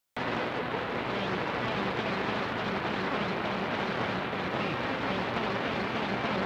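CB radio receiver on channel 6 (27.025 MHz) giving out a steady rush of static hiss, with no clear voice coming through.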